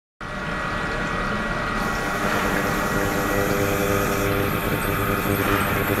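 Ultrasonic cleaning tank running with its liquid circulating: a steady hiss from the water, with several held tones and a low hum.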